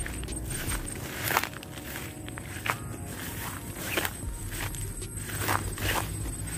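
Footsteps through tall grass, a sharp swish or crunch about every second and a half, over a low steady rumble.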